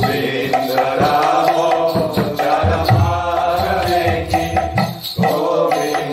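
A man singing a Hindu devotional mantra chant, a melodic line held in long notes, with percussion beats under it.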